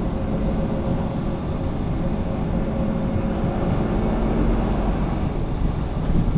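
Steady low rumble inside a 2021 Mercedes-Benz Conecto city bus, from its OM936 inline-six diesel and Voith automatic drivetrain, heard from the passenger cabin.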